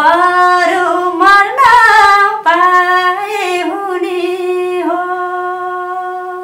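A woman singing solo without accompaniment, in long sustained notes that glide between pitches, holding a long steady note at the end.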